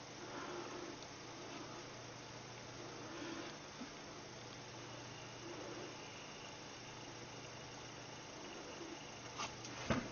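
Faint, steady low hum over a soft hiss from the running bench setup, with no distinct clicks or changes.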